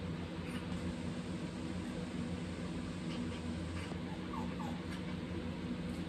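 A steady low mechanical hum made of several fixed tones, with two brief faint chirps about four and a half seconds in.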